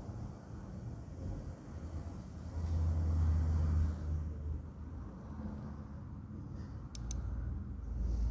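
Heat gun running as it is passed over freshly poured epoxy resin to draw out trapped air bubbles: a steady low hum that swells for about a second and a half, starting about two and a half seconds in. Two sharp clicks near the end.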